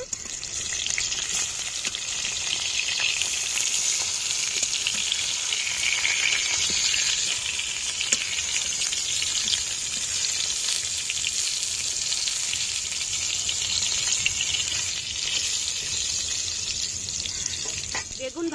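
Brinjal (eggplant) slices sizzling steadily as they shallow-fry in hot oil in a metal karai, with a few light clicks of a metal spatula as the slices are turned.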